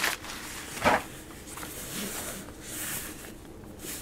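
Fabric camera sling bag being handled and its front pocket zipper worked open, soft rustling with one short, louder sound about a second in.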